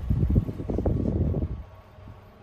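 Low, uneven rumble of wind buffeting the microphone, easing off about a second and a half in.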